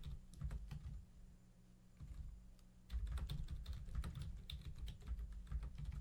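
Faint computer-keyboard typing: quick, irregular key clicks over a low hum. The clicks thin out to a near-quiet gap between about one and three seconds in, then pick up again.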